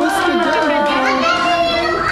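Many children's and adults' voices shouting and calling over one another, a loud, continuous party din.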